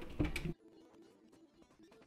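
A knock and a brief sound that cut off abruptly about half a second in, then near silence.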